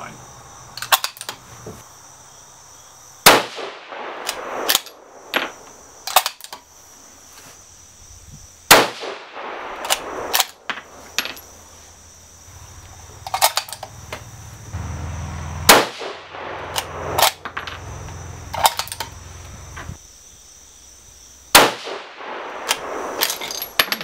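A 6.5x47 Lapua bolt-action rifle fires four shots, spaced about five to seven seconds apart, each a sharp crack with a short echoing tail. Between shots the bolt is worked with metallic clicks and clacks as the spent case is ejected and a new round chambered.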